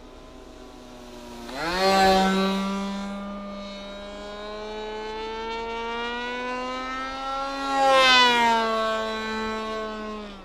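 The engine of a small propeller aircraft flying overhead, a steady buzzing note. The note rises sharply about a second and a half in and is loudest as the aircraft passes close about two seconds in. It passes close again about eight seconds in, after which the pitch drops as it moves away.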